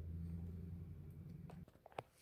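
A steady low hum that cuts off about a second and a half in, followed by a faint click near the end.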